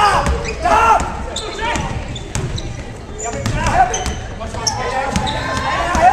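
Basketball dribbled on a hardwood gym floor, with short high sneaker squeaks and shouts from players and spectators.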